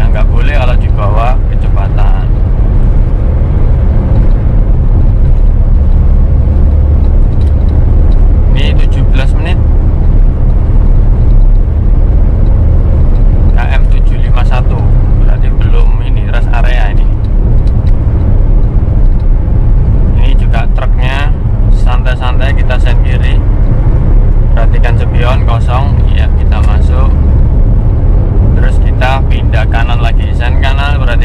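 Inside the cabin of a 2014 Suzuki Karimun Wagon R cruising at about 100 km/h: a steady low drone from its small three-cylinder engine, with tyre and wind noise, holding even throughout.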